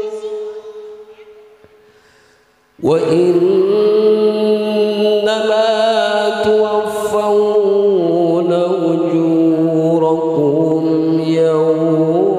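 Male qari reciting the Qur'an in a melodic, high-pitched style through a microphone and echoing sound system. The previous phrase's long held note dies away over the first three seconds, then a new long, ornamented phrase begins suddenly and is held, with wavering trills, to the end.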